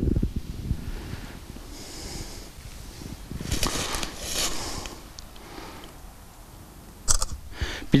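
Breath noises close to a clip-on microphone: sniffing and exhaling, loudest about halfway through, over a low rumbling.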